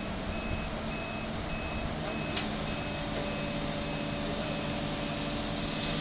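A mobile crane's diesel engine runs steadily under load while lifting a reach stacker. A high electronic warning beeper repeats a little under twice a second, and there is one sharp click a little over two seconds in.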